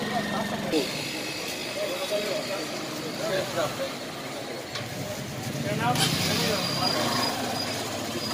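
Street sound of motorcycle engines running at low revs, mixed with people talking.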